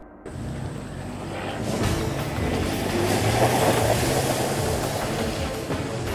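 A vehicle pulling away under music. The noise comes in suddenly just after the start, swells to its loudest about halfway through, then eases.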